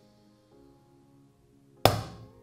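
Ostrich egg shell knocked once against a frying pan near the end, a single sharp crack as the thick shell gives way, over faint background music.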